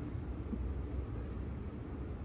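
Steady low background rumble with no distinct clicks or knocks.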